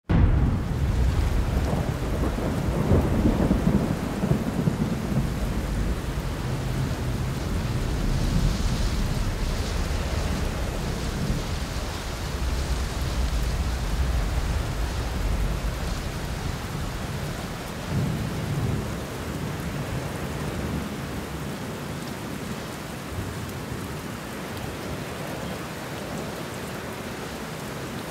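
Steady rain with low rumbles of thunder, the heaviest rumbling in the first few seconds and again briefly about eighteen seconds in, slowly dying away.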